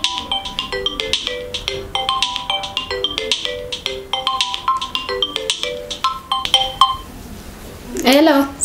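Smartphone ringtone ringing: a repeating melody of short chiming notes that stops about seven seconds in, when the call is answered.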